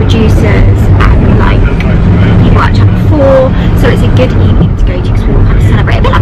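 Steady low rumble of a car's road and engine noise inside the cabin, with a woman's voice talking over it.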